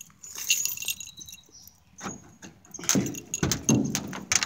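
Keys jingling in the first second, then a run of knocks and clunks from about two seconds in as a pickup truck's door handle and latch are worked to open the door.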